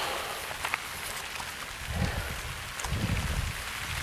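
Light rain falling steadily, an even hiss of drops with the odd drop ticking close to the microphone. Two muffled low thumps come about halfway through.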